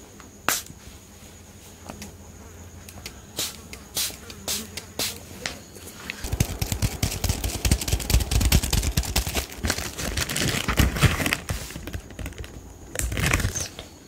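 Fingernails tapping and scratching fast on a cardboard box, close to the microphone. A few sharp clicks come first. A dense crackling run of taps then starts about six seconds in and lasts about five seconds, and one more short burst of handling comes near the end.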